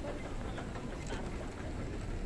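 Background noise of a large airport terminal hall: a steady low rumble with a few faint taps.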